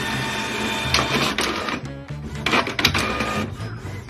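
Canon inkjet printer printing: its print head and paper feed run with a loud mechanical whirring and clatter, easing off about three and a half seconds in. Background music plays underneath.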